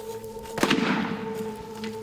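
A single big-game rifle shot about half a second in, its report ringing and dying away over a steady low music drone.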